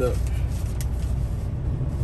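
Semi-truck diesel engine idling, a steady low rumble heard inside the cab.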